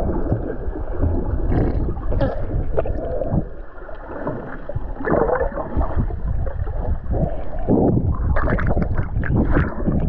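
Muffled underwater sound from a submerged camera: water churning and bubbling as a swimmer strokes past. Louder surges come about halfway through and again near the end.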